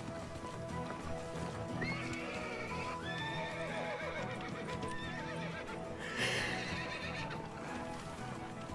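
A horse whinnying in long wavering calls and hooves clip-clopping, over steady background music; a louder, rougher burst comes just after six seconds in.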